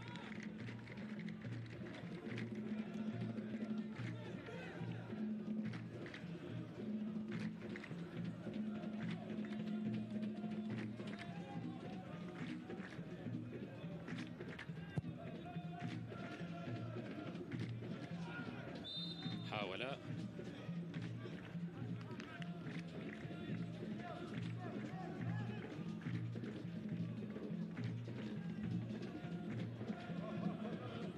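Stadium supporters beating drums in a steady rhythm and chanting, carried on a football broadcast's field-side sound. A brief high tone that slides downward sounds about nineteen seconds in.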